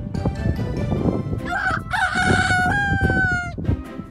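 Australian magpie mimicking a rooster's crow: one drawn-out call of about two seconds that rises, holds and sags slightly at the end.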